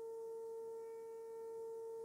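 Steady 400 Hz test tone from a Philips valve AM tuner, demodulated from a signal generator's 550 kHz medium-wave carrier, with fainter overtones above it. The tuner is tuned onto the test signal.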